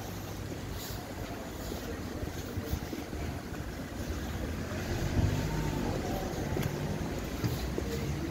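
Low rumble of wind buffeting the microphone over street traffic noise, with a vehicle engine's low hum swelling about five seconds in and easing off near the end.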